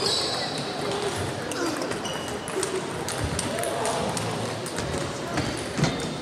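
Table tennis balls clicking irregularly off bats and tables from several matches played at once, echoing in a large sports hall, with indistinct voices.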